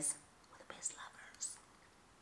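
A woman whispering faintly: a few short, hissing syllables about a second in, with no voice behind them, against quiet room tone.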